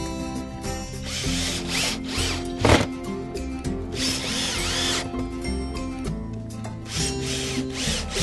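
Cordless drill driving screws into pre-drilled holes in a cedar board, in several short runs of a second or so each, over background music.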